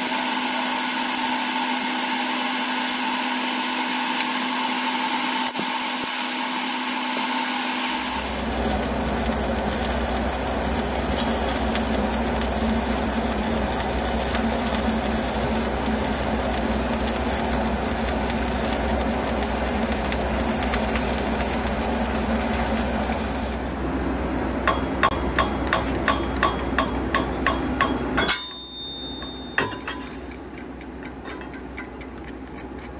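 Stick welding with a 7018 rod at about 130 amps: the arc's continuous crackle and hiss, over a steady machine hum that deepens about eight seconds in. Near the end comes a run of sharp taps, about two a second, before the sound drops away.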